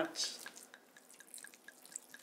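Red wine pouring from a bottle onto ground meat for soppressata, a faint trickle with small scattered drips.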